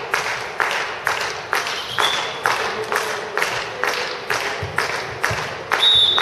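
Spectators clapping in a steady rhythm, about two claps a second, echoing in a sports hall.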